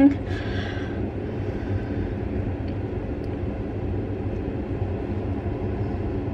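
A steady low rumble of background noise with no clear events, holding an even level throughout.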